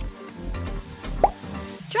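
Electronic background music with a steady beat. A little over a second in comes a short, loud pop sound effect that glides upward in pitch, marking the change to the next quiz question.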